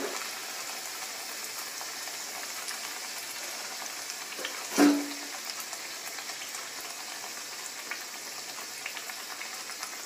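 Oil sizzling steadily in a kadai as pathir pheni pastry deep-fries. One sharp knock, the loudest sound, comes about five seconds in.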